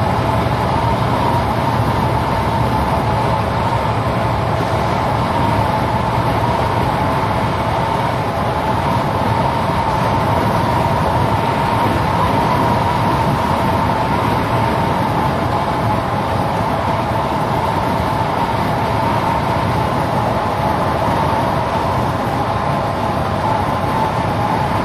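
Steady engine and road noise from inside a semi-truck cab driving on wet city streets.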